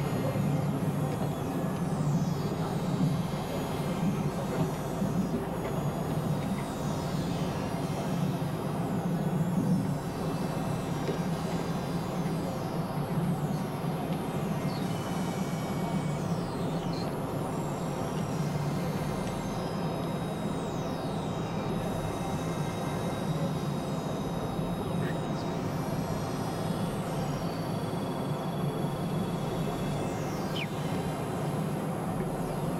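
Experimental synthesizer drone music: a dense, steady low hum layered with many held tones and repeated falling high-pitched glides, a little louder in the first third.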